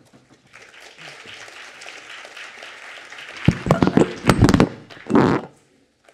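Audience applauding, with a cluster of loud, deep thumps and knocks on the lectern microphone about three and a half seconds in and another about five seconds in, as speakers change over at the lectern.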